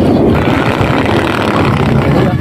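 Strong wind buffeting the microphone: a loud, low, fluttering rumble.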